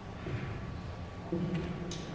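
Quiet auditorium pause with a steady low room hum. About a second and a half in there are a couple of short, soft instrument notes, and a sharp click comes just before the end.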